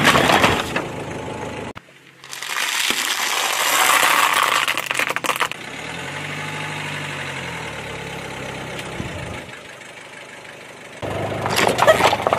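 A car tyre rolling over and crushing objects in a run of short cut clips: aluminium soda cans crunching and bursting, then a long spraying hiss. A quieter stretch with a low wavering tone follows, and near the end cardboard boxes crunch under the tyre.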